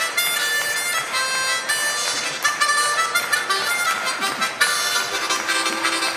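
Harmonica played solo, cupped in the player's hands, in a quick run of changing notes with several tones often sounding together.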